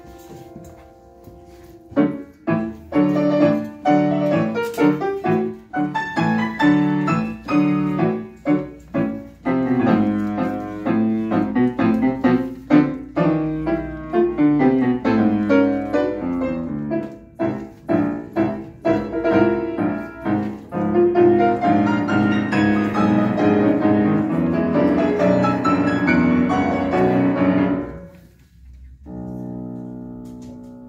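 Solo grand piano playing a scherzo. A soft held chord gives way about two seconds in to loud, fast, detached chords and runs that stop suddenly near the end, followed by a soft chord.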